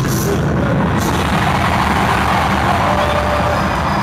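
Loud, distorted live-concert sound: a dense roar of crowd noise over the steady bass of the music.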